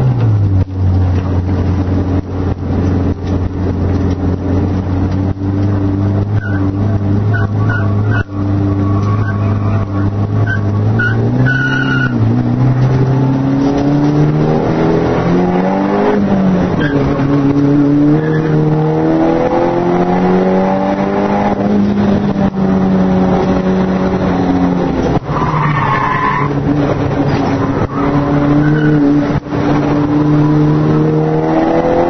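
Nissan S13's engine heard from inside the cabin under hard driving. The engine note falls to a steady low run for about ten seconds, then rises and falls with the throttle for the rest of the time. Short tyre squeals come between about six and twelve seconds in, and again briefly near the end.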